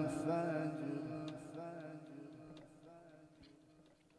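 A man's melodic Quran recitation ending a long phrase through a microphone and PA, the held, wavering note dying away with echo to near silence about three and a half seconds in. A few faint ticks sound as it fades.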